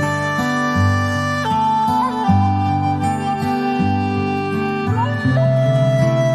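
Instrumental background music: a slow melody of long held notes over a repeating low bass pattern.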